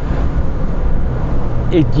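Cabin noise from a moving 1993 Ford Explorer, its 4.0-litre V6 under high throttle through the automatic gearbox, heard as a steady rush of engine, road and wind noise. The driver finds the engine remarkably unresponsive to the pedal and blames a lazy torque converter.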